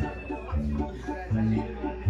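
A banda playing quietly in the background, carried mostly by a low bass line of held notes that change every half second or so.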